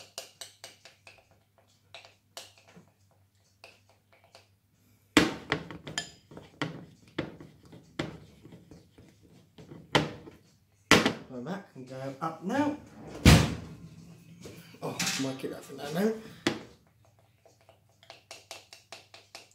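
Spoon scraping and clicking against a glass mixing bowl as melted chocolate is stirred, with two heavier thumps of the bowl, the louder about 13 seconds in. A low voice murmurs in places.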